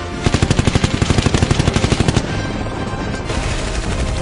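Machine gun firing one rapid burst, about ten shots a second, stopping a little over two seconds in.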